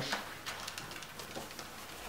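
Board-game spinner arrow flicked and spinning on the cardboard game board: a faint sound with light, irregular ticks.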